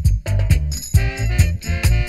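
Roots reggae music with a heavy bass line and a steady drum beat.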